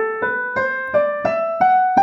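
Piano playing the G major scale upward one note at a time, at an even pace of about three notes a second, climbing to the high G, which is struck near the end and rings on.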